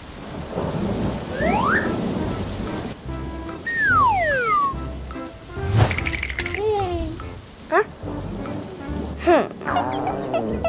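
Cartoon thunderstorm sound effect: steady rain with low rolls of thunder, and several short high tones sliding up and down over it.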